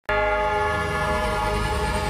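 Background music: a held chord of several steady tones that starts abruptly at the very beginning.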